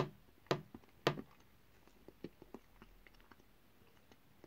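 Biting into a piece of Hershey's milk chocolate and chewing it: a few sharp snaps in the first second or so, then fainter chewing clicks.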